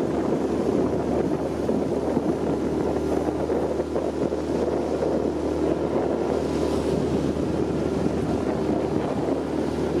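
A motorboat's engine running at a steady cruising speed, a constant drone with wind buffeting the microphone and water rushing past the hull.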